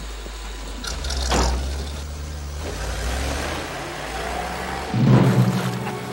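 A vehicle engine rumbling low and steady, with a sharp knock about a second and a half in. Near the end a sudden loud surge breaks in as music rises.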